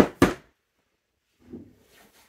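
Cardboard jigsaw puzzle boxes being handled: two sharp knocks a quarter second apart at the start, then a softer scuffing about a second and a half in.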